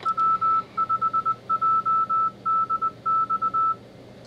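Morse code side tone from an Arduino-based Iambino keyer's small speaker: a single steady high beep keyed in dots and dashes at about 20 words per minute, playing back the stored call sign W5JDX from memory slot one.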